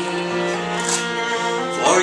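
Fiddle and acoustic guitar playing a slow Irish folk ballad on steady held notes, with the singer coming back in on the next line near the end.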